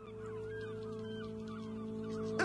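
Short gliding bird calls over a steady hum of several held tones, starting suddenly after dead silence.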